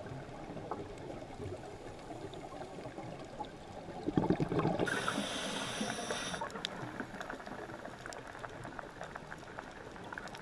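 Scuba diver's breathing heard underwater through the camera housing: a gurgle of exhaled bubbles about four seconds in, then a hiss lasting about a second and a half, over a steady crackling background.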